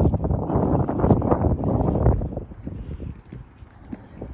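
Wind buffeting the phone's microphone, a loud low rumble that dies away about two seconds in, leaving a quieter outdoor hush.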